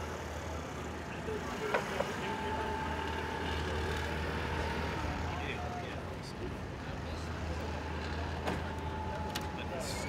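A steady low rumble of drag-car engines idling in the staging lanes, with a few faint clicks over it.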